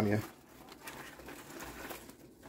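Faint rustling of a nylon magazine placard being picked up and turned over in the hands.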